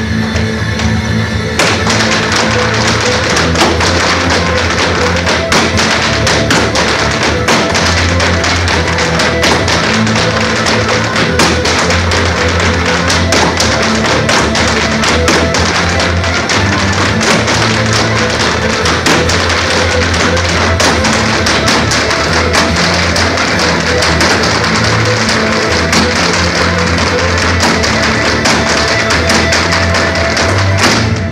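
An Irish dance tune with the quick, rhythmic clatter of several dancers' hard shoes striking the floor together. The taps grow dense about a second and a half in.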